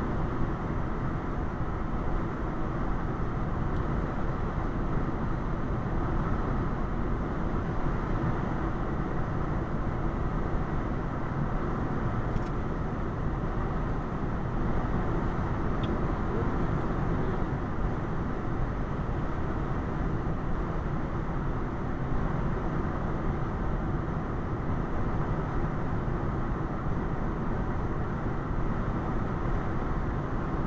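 Steady road and tyre noise with the engine of a car cruising at about 58–59 mph on the highway, heard from inside the cabin.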